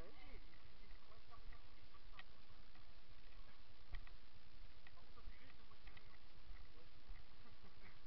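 Footsteps crunching on dry leaf litter and twigs on a woodland path, irregular soft crunches and snaps over a steady low rumble on the microphone.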